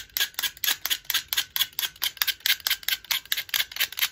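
Sharp knife blade scraping the bark off a tulsi twig in quick, even strokes, about six a second.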